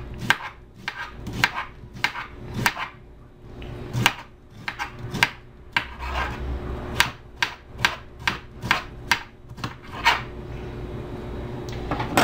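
Kitchen knife slicing an onion into strips on a cutting board: a run of sharp knocks of the blade on the board, about three a second, with a short pause about three seconds in.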